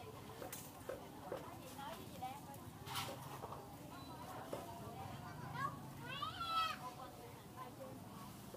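Background chatter of several voices, none close, with a sharp click about three seconds in. A louder drawn-out call rises about six seconds in.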